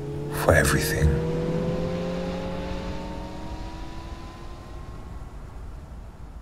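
Electric car's drive motor whining as it accelerates, the whine rising slowly and steadily in pitch. Two short noisy bursts come about half a second and a second in, and the whole sound gradually fades away.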